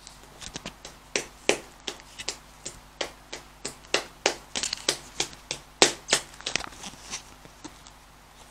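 Fluffy white slime being squeezed and poked by fingers close to the microphone: a run of sharp clicks and pops, two to four a second, that stops about a second before the end.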